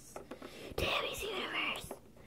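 A person whispering for about a second, breathy and unvoiced, with a faint click just before it starts and another as it stops.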